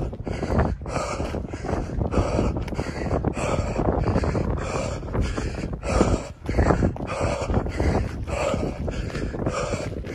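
Heavy, rhythmic panting of a man running uphill while exhausted, his breaths coming in quick regular gusts.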